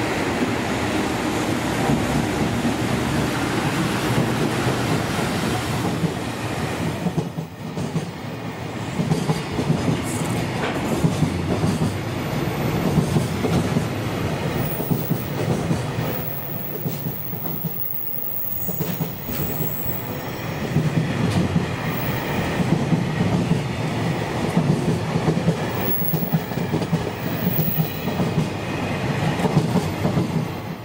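A freight train, an electric locomotive followed by a long string of container wagons, passing close by. Its wheels run on the rails with a steady rumble and repeated clacks over the rail joints.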